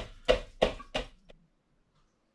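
Metal mesh sieve knocked against a plastic funnel in quick, even taps, about three a second, shaking the last elderflower tea through the strained flowers. The taps stop about a second and a half in.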